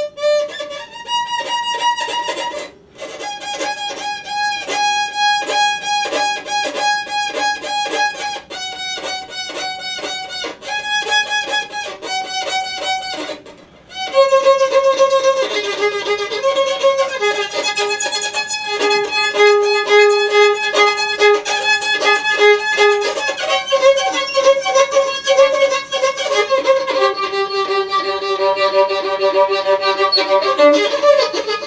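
Three-quarter-size violin bowed in long held notes, with two short breaks in the first half. The playing grows louder from about halfway.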